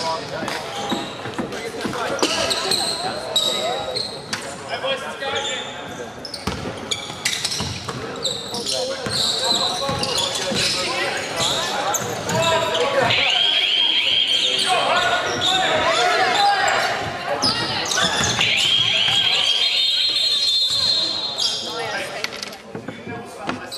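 Basketball being played on a hardwood gym floor: the ball bouncing, sneakers squeaking on the court, and players and spectators calling out, all echoing in the hall. The squeaks come in the second half, several in a row.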